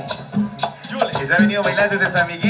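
A live chanchona band, a Salvadoran regional string band, playing a cumbia with a quick, even beat of about four strokes a second.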